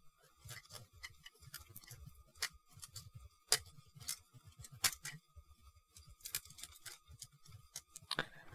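Faint, scattered clicks and taps of hard plastic on plastic, a few sharper ones in the middle: a plastic model rifle being handled and nudged into a plastic model kit's hand.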